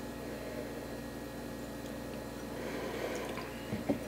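Quiet room with a steady low hum. Over it come faint sounds of neat bourbon being sipped from tasting glasses, and a light knock near the end as a glass is set down on a wooden barrel head.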